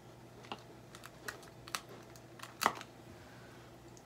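Scattered light clicks and taps of hands handling sticky tape and pressing it onto a paper plate against a whiteboard, with one louder tap about two and a half seconds in.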